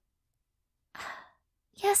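A woman's short breathy sigh about a second in, with speech starting near the end.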